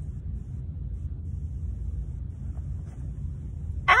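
A steady low rumble, with no other clear sound over it.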